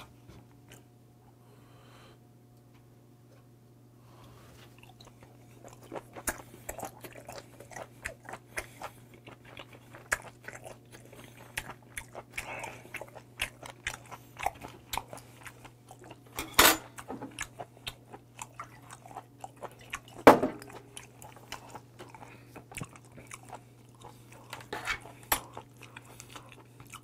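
Close-miked chewing of boiled white whelk (백고동) meat, with many small wet clicks and squishes that start a few seconds in and run on, and a couple of louder sharp clicks about two-thirds of the way through. A faint steady low hum lies underneath.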